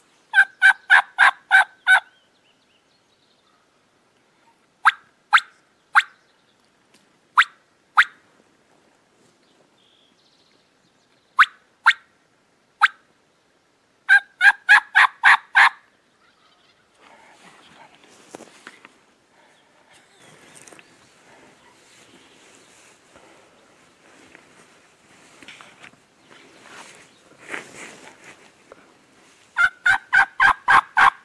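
Merriam's wild turkey gobbler gobbling twice, each a rapid rattling burst of about seven notes, near the start and again about halfway, with a few single sharp notes between. Only faint, uneven noise follows in the second half.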